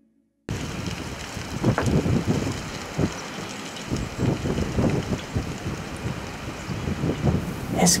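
Wind buffeting the microphone outdoors: a steady rushing with irregular low gusts, starting suddenly about half a second in.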